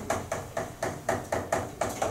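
Chalk on a chalkboard, tapping and scraping out the strokes of a handwritten equation: a quick series of sharp taps, about four a second, stopping near the end.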